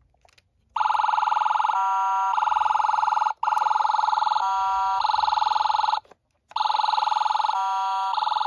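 Toy State Road Rippers mini fire truck's electronic siren playing loudly through its replacement speaker, set off by the roof button. It is a fast-warbling siren tone with a short stepped two-tone stretch in each run. It starts about a second in, cuts out briefly twice and restarts.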